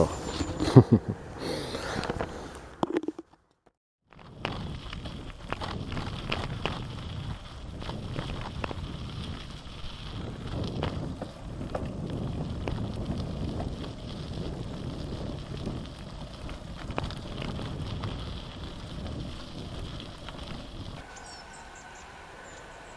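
Gravel bike (Genesis Croix de Fer) rolling down a dirt and gravel track: steady tyre noise on the loose surface, broken by many small knocks and rattles from the bike. It starts about four seconds in, after a short laugh and a brief silence, and stops near the end.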